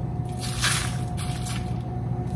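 Coarse kosher salt tipped from a measuring spoon onto oiled Brussels sprouts in a bowl: a soft hiss of falling grains lasting under a second, then a fainter second one, over a steady low hum.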